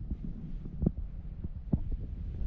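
Low wind rumble on the microphone, with two soft knocks about a second apart as succulent stems are handled and broken off by hand.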